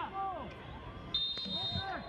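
A single short, steady whistle blast about a second in, typical of a referee's whistle signalling a corner kick to be taken, over faint voices.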